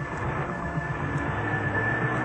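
Synthesizer music with a steady pulsing beat and a held high note. A rushing car drive-by sound swells up over it.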